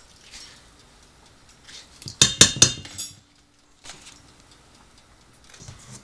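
A metal spoon knocking against a stainless steel mixing bowl while avocado is scooped into it: a quick run of ringing clinks about two seconds in, with a few fainter taps and scrapes before and after.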